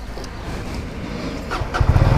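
Small clicks as the fuel filler cap is locked with the key, then near the end the Benelli motorcycle's engine starts and settles into a steady low idle.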